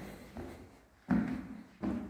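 Footsteps on a staircase, three steps at a steady walking pace about 0.7 s apart, each a sudden thud with a short echo.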